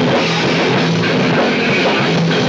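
Live rock band playing at full volume: electric guitar over a drum kit, in a steady driving groove.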